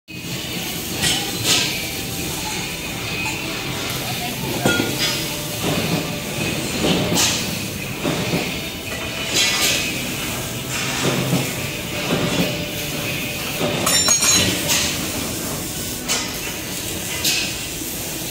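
Steel tubes clinking and clanking against one another and against a metal bench as they are handled, with sharp metallic knocks every second or two over a steady background noise.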